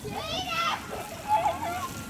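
Children's high-pitched voices calling out, once in the first second and again around the middle, over a steady outdoor background hiss.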